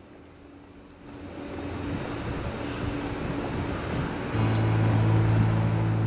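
City street traffic: a broad rushing noise that swells over a few seconds, joined by a steady low hum from about four seconds in.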